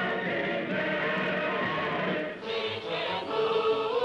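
A choir singing held notes in a choral number from a 1940s film soundtrack; the singing dips briefly about two and a half seconds in, then a new phrase begins.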